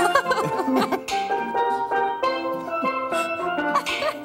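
A steel pan and a guitar playing a lively island tune together, the steel pan's ringing notes carrying the melody over the guitar's chords.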